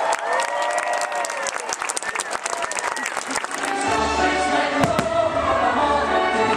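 A gliding voice with crowd noise and many sharp clicks. About four seconds in, orchestral show music starts, and a single firework bang goes off about a second later as the castle fireworks show opens.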